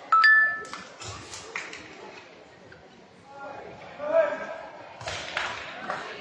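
A sharp, bright ping rings out once just after the start and fades away over about half a second. After it come scattered voices and some clapping in a large, echoing hall.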